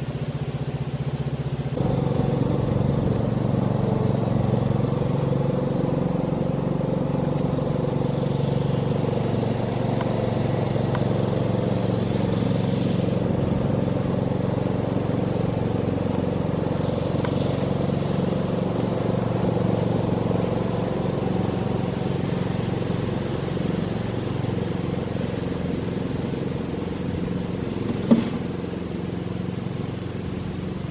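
A steady engine running off-screen, its pitch settling slightly about two seconds in, with one brief sharp knock near the end.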